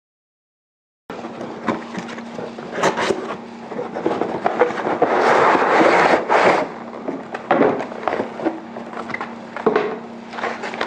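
Handling sounds of a moulded paper-pulp packing tray holding an SMC filter-regulator-lubricator unit: rubbing, scraping and small knocks starting about a second in, loudest in a long scrape about halfway through. A faint steady low hum runs underneath.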